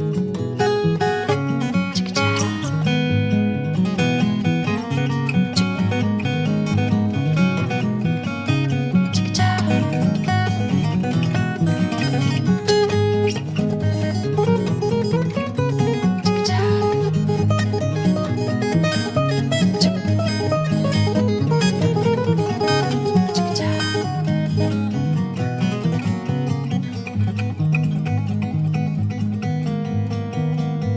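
Two acoustic guitars playing together in an instrumental passage of a song, a steady stream of plucked notes with no singing.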